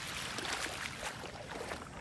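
Small ripples lapping gently at the water's edge of a calm sea: a soft, steady wash with faint irregular crackles.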